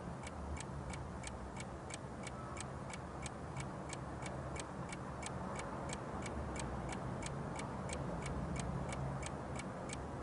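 Steady, rapid mechanical ticking, nearly four crisp ticks a second and even in pace, over a faint low rumble.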